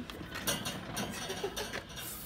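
Irregular clicks and rattles of items being handled in a wire display bin.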